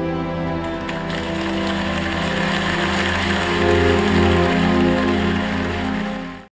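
Sustained, sad orchestral film score chords, joined about a second in by a steady rushing noise that swells toward the end; the sound cuts off abruptly.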